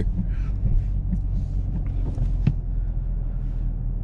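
Chevrolet Camaro ZL1 heard from inside the cabin while driving slowly, its engine and tyres making a steady low drone. There are a few faint ticks and one sharper click about two and a half seconds in.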